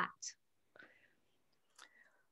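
A pause in a woman's speech: the tail of a spoken word at the start, a short breathy hiss, then soft breaths and a small mouth click, otherwise nearly silent.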